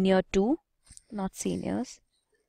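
Speech only: a voice explaining a grammar example, in two short phrases with a brief pause between them.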